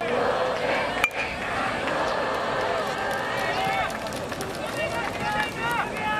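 Spectators' voices calling out from the stands, with a single sharp crack about a second in as the pitch reaches the plate.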